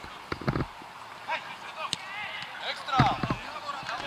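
Players shouting to each other during a football match, with sharp thuds of the ball being kicked, two close together about half a second in.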